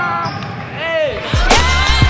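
Basketball shoes squeaking on a gym floor, then hip-hop music comes in about two-thirds of the way through with deep bass kicks that drop in pitch.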